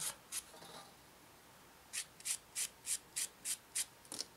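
A sanding stick rubbed back and forth on a small plastic model-kit part in short, hissy strokes. Two strokes at the start, a pause, then a quick run of about seven strokes, roughly three a second.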